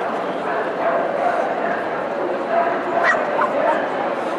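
Dogs barking and yipping over the steady hubbub of a crowd's voices in a large hall, with a short rising yelp about three seconds in.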